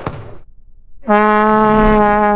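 A long plastic fan horn (vuvuzela-type) blown in one steady, loud note that starts about halfway in, after a moment of near silence.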